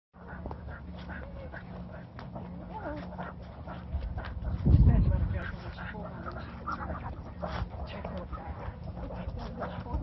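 Dogs on leashes giving faint whines over indistinct voices, with a steady low rumble of wind on the microphone that swells into a loud low surge about halfway through.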